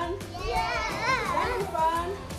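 A group of young children's voices, calling and singing together with pitch rising and falling.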